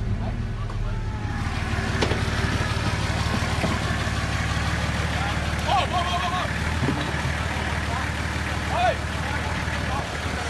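Lifted 4x4 truck's engine running steadily, the noise rising about a second in, with a few brief shouts from onlookers.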